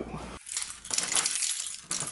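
A bunch of keys jingling and clinking in the hand, a rapid patter of small metallic clicks.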